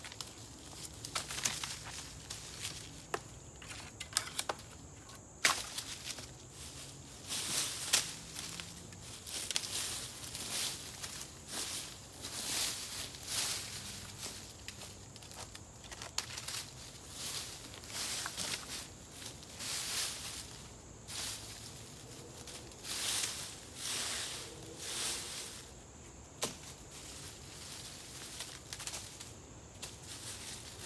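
Dry leaf litter and sticks being scraped and dragged across the forest floor with a stick to clear the ground, in repeated rustling swishes about once a second. There are sharp snaps of twigs in the first several seconds.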